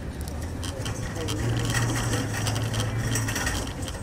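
Grocery shopping cart being pushed: a steady low rumble from the wheels with light metal rattles and clinks. The rumble stops near the end.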